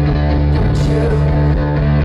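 Live rock band playing an instrumental passage, with electric guitar over a steady bass and no lead vocal.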